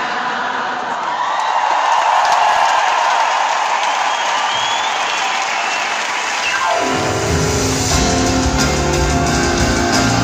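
Live amplified rock concert in a large arena: a noisy wash of crowd cheering and applause with little bass, then about seven seconds in the band comes in loud with heavy bass.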